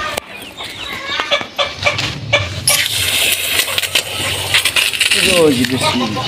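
Chickens clucking among scattered short clicks and knocks. About three seconds in, a steady rushing noise with a low hum comes in and carries on.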